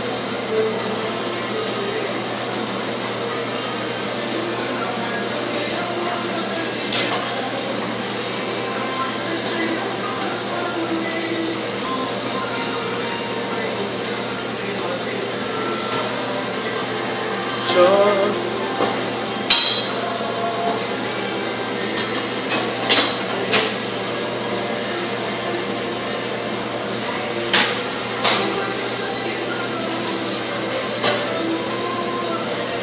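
A handful of sharp metallic clinks and taps, most of them in the second half, as a kitchen knife and other metal utensils are handled against a plastic cutting board while a salmon is filleted. A steady background hum runs beneath.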